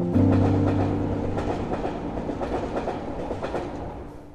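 Train running on rails, its wheels clacking over the track in a quick, irregular rhythm that fades away toward the end. It sits over a sustained music chord.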